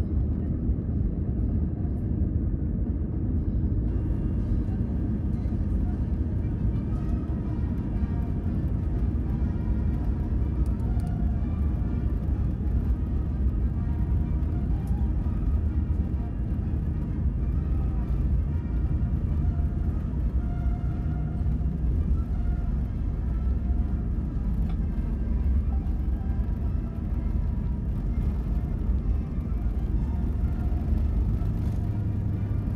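Airbus A320 cabin noise while taxiing: a steady low rumble from the engines and the rolling airframe, heard from a seat inside the cabin.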